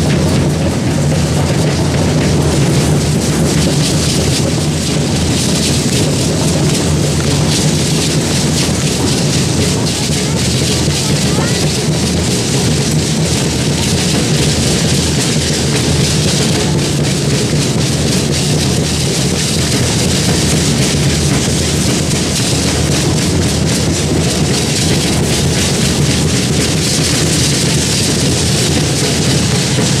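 Matachines dance music: a drum beat under the dense, continuous rattling of many dancers' rattles, with crowd voices mixed in, loud and unbroken.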